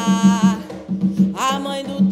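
A woman singing an Umbanda ponto over atabaque hand-drum strokes: a held sung note fades out about half a second in, and a new phrase begins near the end while the drum keeps a steady pattern.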